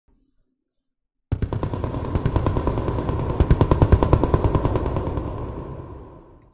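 Intro sound effect for an animated channel logo: about a second in, a fast rattle of clicks over a steady tone starts abruptly, then fades out over about four seconds.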